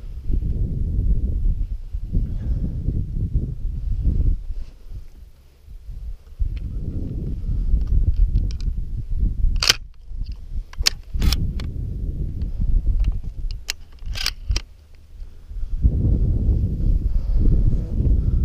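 Wind buffeting the microphone, with a run of sharp metallic clicks about halfway through as shotgun shells are pushed into the gun's magazine.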